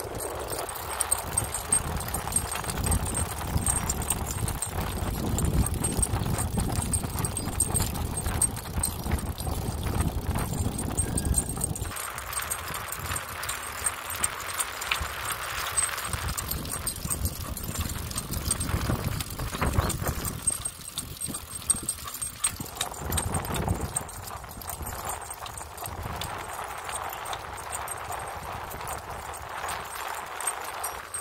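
A Labrador's footfalls on asphalt as it trots beside a moving bicycle, a steady rhythmic clicking, over wind rumble on the microphone that is heavier for the first dozen seconds and then eases.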